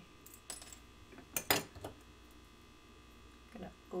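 Small metal clicks and taps of chain nose pliers handling a small piece of bent sheet metal: a few sharp clicks in the first two seconds, the loudest about a second and a half in.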